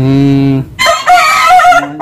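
A rooster crowing loudly, starting just under a second in and lasting about a second, after a short, steady held tone at the start.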